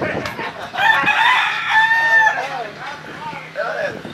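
A rooster crows once, a single long call lasting about a second and a half that begins about a second in.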